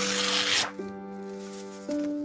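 A paper label scraped and peeled off the glass of a picture frame in one short rasp lasting about half a second, over background music with slow held notes.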